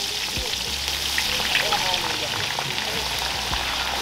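Pieces of fish frying in a wide pan of hot oil over a wood fire: a steady sizzle with many small crackles as more pieces are lowered into the oil.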